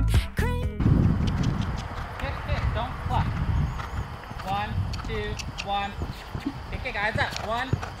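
Background music cutting off about a second in, followed by a horse's hoofbeats as it canters over sand arena footing, with faint voices in the background.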